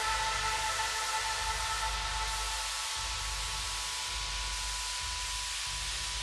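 Electronic track in a quiet breakdown: a steady wash of white-noise hiss over synth chords that slowly fade, with a low bass underneath.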